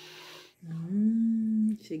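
A woman humming a long, steady 'mmm' of relish on one note, about a second long, then starting to speak near the end.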